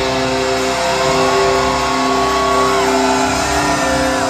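Live rock band in an arena, heard through a phone: distorted electric guitar holding long notes over sustained chords. A bent note rises about a second in and is held for nearly two seconds, and a second held high note comes near the end.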